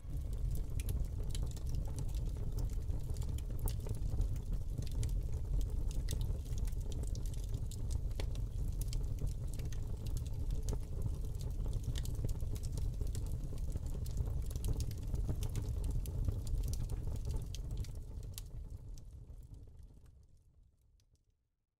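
Small fire of crumpled paper burning, with irregular sharp crackles over a low steady rumble; it fades out near the end.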